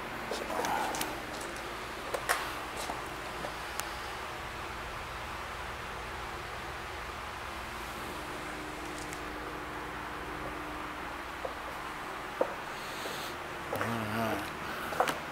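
Quiet indoor room tone: a steady low hum with a few faint clicks scattered through.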